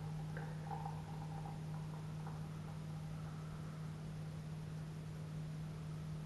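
Russian Imperial Stout poured from a glass bottle into a stemmed glass: a faint, quiet pour under a steady low hum.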